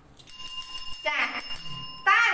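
A steady ringing tone made of several pitches held together, starting just after the start and cutting off near the end, with a brief voice sound in the middle.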